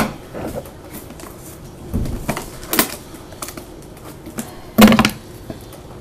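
Scattered knocks and clicks of a metal trading-card box tin being handled on a desk, with a louder knock near the end.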